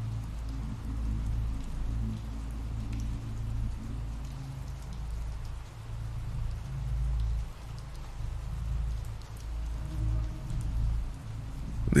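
Steady recorded rain ambience with a low rumble underneath that swells and fades.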